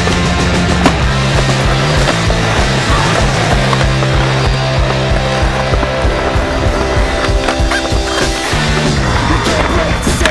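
Music with a bass line that changes note every second or so, laid over a skateboard's wheels rolling and carving on a concrete bowl. Sharp clacks of the board mark the ride, the loudest about a second in.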